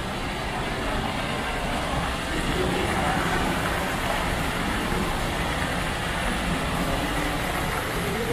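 Indoor artificial waterfall pouring steadily into a rock pool: a continuous rush of falling water.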